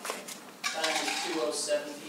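Handling noise from a microphone being moved into place: sharp clicks near the start, then rubbing and clattering, with muffled voices underneath.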